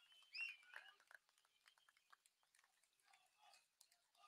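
Near silence, with a few faint high chirp-like sounds and small ticks in the first second.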